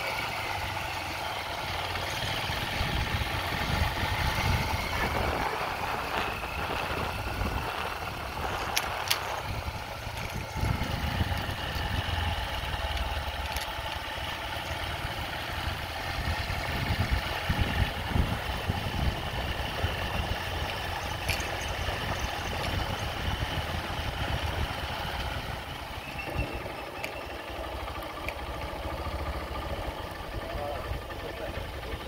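A motor vehicle's engine and road noise heard while driving: a steady low rumble with a few light clicks along the way.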